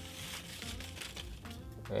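Small slips of paper rustling and crinkling as they are shuffled by hand, over faint background music.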